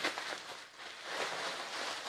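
Thin plastic wrapping rustling and crinkling in uneven bursts as it is peeled off a laptop and handled.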